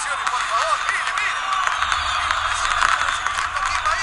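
Football stadium crowd cheering and shouting, a steady din of many voices at once with short shrill calls rising and falling through it.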